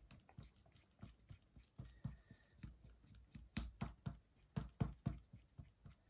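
Wooden craft stick stirring acrylic paint into a PVA pouring-medium mix in a plastic cup. It makes faint, irregular soft clicks and taps, about three a second, as the stick knocks and scrapes against the cup.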